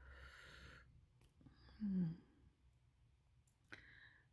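A breathy exhale, then a brief low hum from a person about two seconds in, the loudest sound here. Near the end comes a small sharp click as fingers work the pin of a metal brooch.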